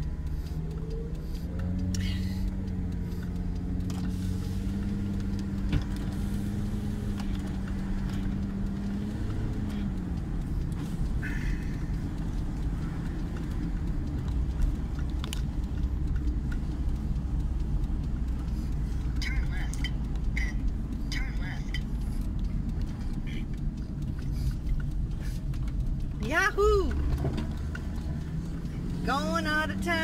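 Engine and road noise of a VW Winnebago Rialta motorhome heard from inside the cab while driving. The engine note climbs slowly and then drops about nine seconds in. A few short high calls that rise and fall come near the end.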